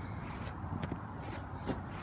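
Footsteps on a snow-covered gravel roof: a few faint, irregular steps over a steady low background rumble.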